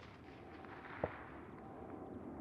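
A single muffled, distant rifle shot about a second in, over a faint steady outdoor background.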